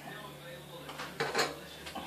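Metallic curling ribbon pulled sharply along a knife blade to curl it: a brief scraping rasp with a light clink of the blade, about a second in.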